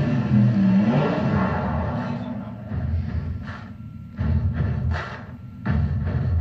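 Sprintcar race broadcast audio played through TV speakers into a room: a low rumble that surges loudly twice in the second half.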